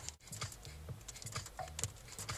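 Small ice pellets and raindrops ticking irregularly on a car windshield, heard faintly from inside the car.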